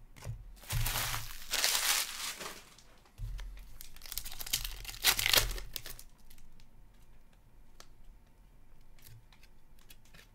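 Foil wrapper of a hockey card pack crinkling and tearing by hand in two loud bursts over the first six seconds, followed by soft ticks and rustles of the cards being flipped through.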